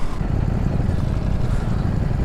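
Ducati Monster SP's 937 cc Testastretta L-twin engine running steadily under way, heard on board with a steady rush of wind noise.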